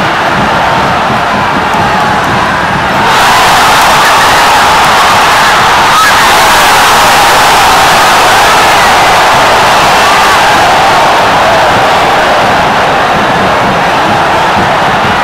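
Large football stadium crowd cheering. About three seconds in the noise swells sharply into a loud, sustained cheer that eases a little near the end.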